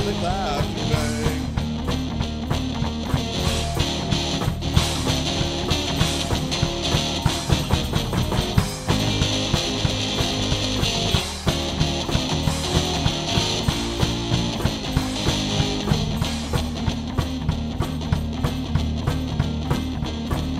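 Instrumental rock and roll break: an electric guitar playing lead over a bass line and a steady beat from a foot-pedal kick drum and snare, with no singing.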